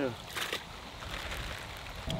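A short crackling handling sound about half a second in as greenback baitfish are handled over a bucket of water, followed by a low steady rumble.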